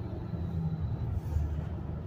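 Low, steady rumble of an idling car engine heard from inside the cabin.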